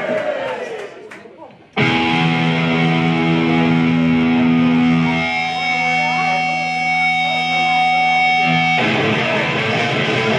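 Live rock band: an electric guitar starts suddenly about two seconds in, ringing out held chords that change about halfway through. Near the end the drums and the rest of the band come in together at full volume.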